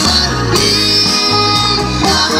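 Live band music: electric keyboards and a bass guitar playing, with held keyboard tones over a steady low bass line.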